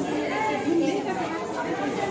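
A group of people talking over one another, several voices overlapping in steady chatter.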